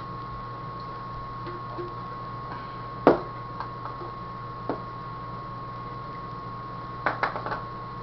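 Hard plastic knocks and clicks from a paintball hopper and pod being handled: one sharp knock about three seconds in, a couple of lighter taps, and a quick run of clicks near the end. A steady high background tone and low hum run underneath.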